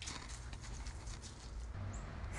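Quiet room tone with a low steady hum and a few faint soft ticks, in the pause between a sung hymn and a spoken prayer.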